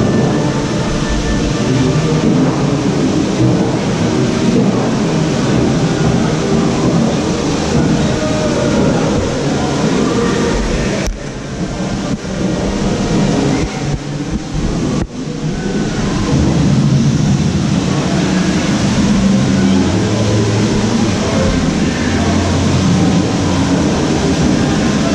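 A loud, steady, train-like mechanical rumble with rattling. It eases briefly about halfway through.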